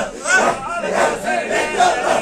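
A group of men chanting a Sufi zikr together, loud rhythmic vocal calls repeating about twice a second.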